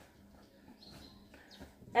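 Quiet room with faint, soft handling sounds of a cloth-wrapped package being set down. A woman's voice starts at the very end.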